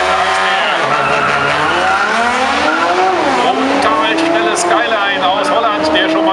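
Drag-race launch: a tuned Nissan GT-R's twin-turbocharged V6 and a second car accelerating hard down the quarter mile. The engine pitch climbs steadily and drops back at each upshift, about three seconds in and again near five seconds.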